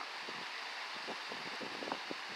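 Steady rush of a mountain stream cascading down a granite chute and small waterfall.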